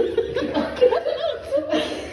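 People chuckling and laughing in short bursts.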